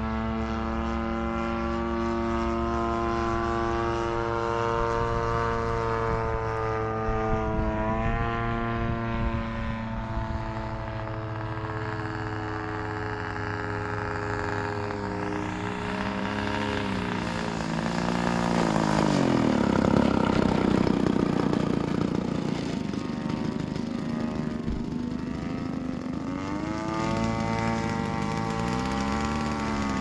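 Radio-controlled model T-28 Trojan's engine and propeller running through its approach and landing, the pitch dipping and rising a few times as the throttle is worked. It is loudest a little past halfway, as the plane passes close.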